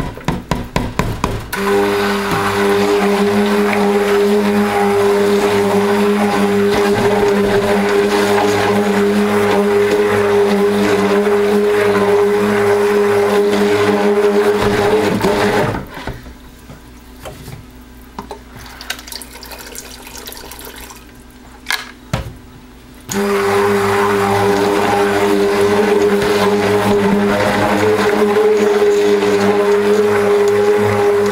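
An immersion (stick) blender runs in a stainless steel pot of cold process soap batter, a steady motor hum with the churn of the thick batter. It comes in with a few short pulses at the start, stops about halfway through for several seconds, then runs again to the end.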